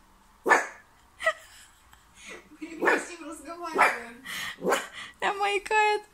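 Miniature pinscher puppy barking: short barks about once a second, quickening into a close run of higher yips near the end.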